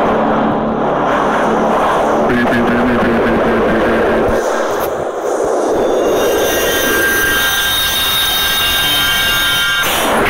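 Cartoon sound effects from an animation's soundtrack: a loud, steady rushing noise, with several high steady ringing tones joining about six seconds in.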